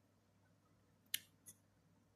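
Near silence broken by two short, sharp clicks a little over a second in, about a third of a second apart, the first louder.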